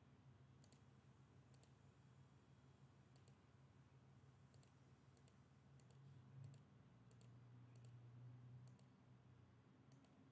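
Faint computer mouse clicks, about a dozen, irregularly spaced, over a low steady hum; otherwise near silence.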